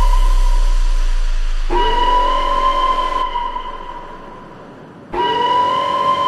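Electronic music: a sustained synth tone over a deep sub-bass hit, struck again about two seconds in and once more about five seconds in, fading away between hits.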